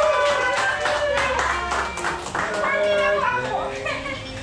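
A group of people singing together, with hand clapping along in a steady rhythm.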